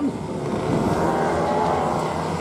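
A pack of racing go-kart engines running together in a steady, mixed drone as the field rolls round before the start.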